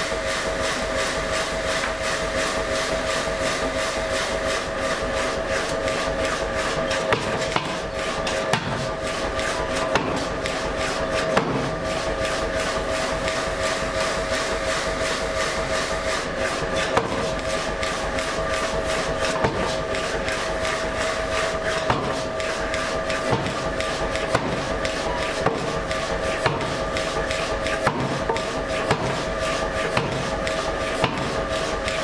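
Glowing hot steel block being forged round under a rapid, even run of hammer blows, with a louder knock every second or two. A steady machine hum runs underneath.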